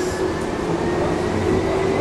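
Inside a passenger train carriage: steady train running noise with a steady hum running through it.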